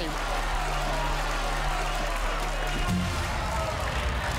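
Game-show suspense music with a held low note under studio audience cheering and shouting; the music shifts to a new note about three seconds in.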